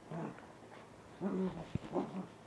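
Small dog making two short, low-pitched vocal sounds about a second apart, the second one longer, with a single sharp click just after the second.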